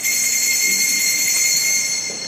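A bell struck once, ringing with a high, steady metallic tone made of several overtones; it starts suddenly and begins to fade near the end.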